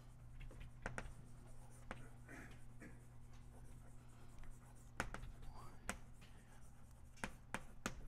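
Chalk writing on a blackboard: faint scratching strokes broken by several sharp taps as the chalk strikes the board, over a steady low hum.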